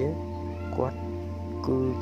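Background music of steady held notes, with a few spoken words of voiceover narration over it.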